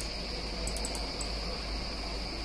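Steady background noise in a pause between speech: a constant high-pitched whine over a low hum, with a few faint clicks about a second in.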